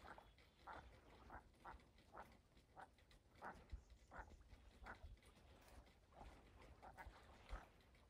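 A flock of ducks calling faintly on the water: short calls, a little more than one a second.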